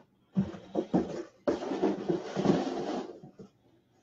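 Handling noise: a few short knocks, then about a second and a half of dense rustling that stops abruptly.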